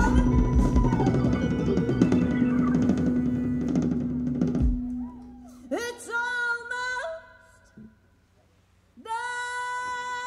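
Live band with electric guitar, keyboards and drum kit playing on a held chord, cut off together with a final hit about halfway through. A woman then sings a short unaccompanied line, there is a brief pause, and a steady held note comes in near the end.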